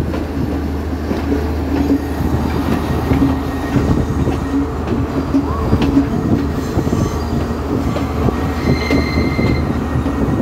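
Passenger train coaches running over a curved viaduct, heard from an open doorway: a steady rumble of the wheels with irregular clacks. A thin, high wheel squeal comes in for about a second near the end as the train takes the curve.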